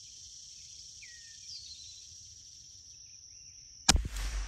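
Steady high-pitched insect buzz with a short falling bird chirp about a second in, then a single sharp .22 LR rimfire gunshot just before the end, by far the loudest sound.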